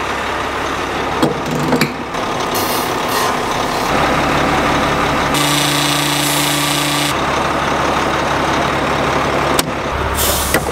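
Steady mechanical running of a diesel semi truck and a fuel-transfer pump as a truck is filled with fuel, heard in short edited pieces. About midway there are two seconds of steadier humming tones with hiss, and a few sharp clicks, one near the end.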